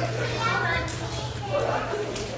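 A girl's high voice speaking, its pitch gliding up and down, over a steady low hum.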